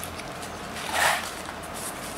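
Plastic wrapping around a stack of printed circuit boards rustling as it is handled, one short crinkle about a second in.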